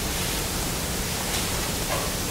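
Steady, even hiss of background noise in a speaking pause: room tone with nothing else standing out.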